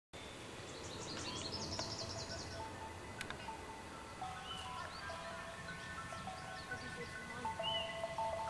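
Outdoor ambience with birds chirping, including a quick run of high chirps in the first couple of seconds, then background music enters about three and a half seconds in: a slow melody of single held notes.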